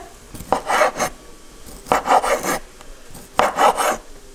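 Large kitchen knife slicing through smoked sausages onto a wooden cutting board: three strokes, each about half a second long and roughly one and a half seconds apart.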